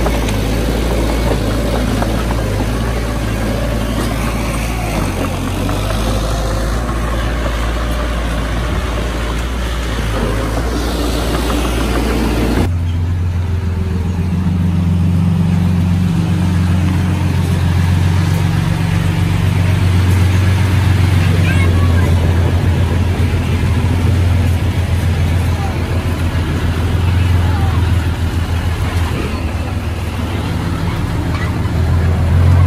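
Diesel engines of a mini bulldozer and a dump truck running together, then about thirteen seconds in an abrupt switch to a loaded five-ton dump truck's diesel engine running with a strong, steady low hum as it backs up.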